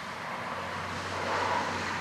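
Distant engine noise: a steady low hum under a rushing sound that swells to its loudest about a second and a half in.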